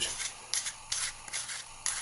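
Hands handling the plastic parts of a pocket shot (an orange plastic ring with a latex pouch): plastic rubbing and scraping with a few light clicks.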